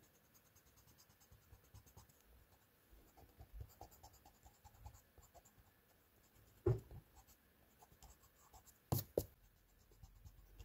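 Drawing tools scratching and rubbing on sketchbook paper in short strokes. There is a sharp knock about two-thirds of the way through and two more close together near the end, as the tools are swapped.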